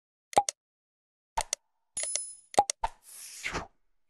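Subscribe-button animation sound effects: quick mouse clicks and pops, a short bell-like ding a little after halfway, and a whoosh near the end.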